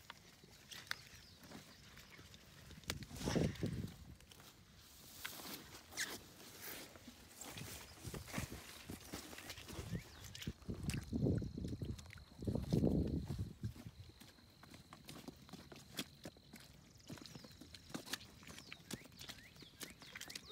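Footsteps through wet grass and mud with light scattered clicks, and a few louder low, muffled bumps about three seconds in and again around eleven to thirteen seconds. A faint steady high tone runs for several seconds in the middle.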